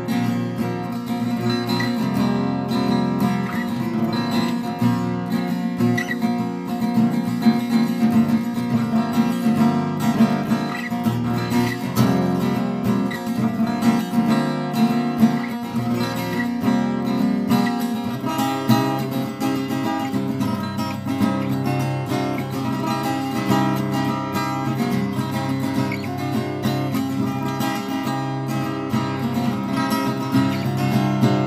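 Recording King RP1-626 parlour-size acoustic guitar strummed with a pick, a continuous run of chords.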